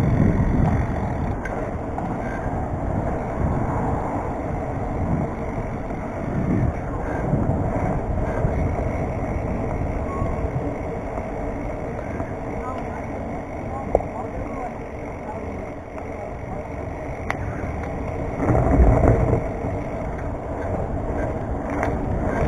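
BMX bike rolling along a concrete path, its tyre noise under wind buffeting the microphone, with stronger gusts at the start, about a third of the way in and near the end. A single sharp click comes about two-thirds of the way through.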